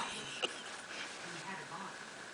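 A person's soft voice speaking a few low words, with a single sharp click about half a second in.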